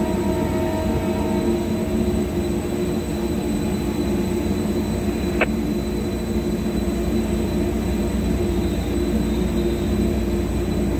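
Steady running rumble of a moving vehicle heard from inside it, with one short click about five and a half seconds in.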